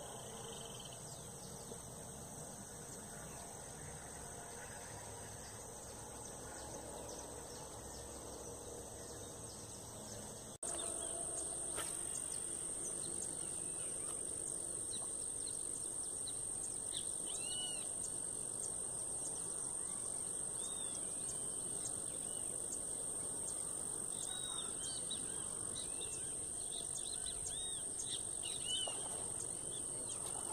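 Steady high-pitched insect chorus, like crickets, running through, louder from about ten seconds in. Over the second half, birds give short, scattered chirps.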